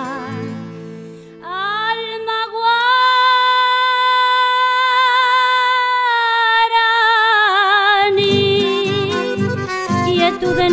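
A woman's singing voice slides up into one long held high note with vibrato near its end, closing a chamamé-style song. About eight seconds in, rhythmic guitar strumming comes back in beneath it.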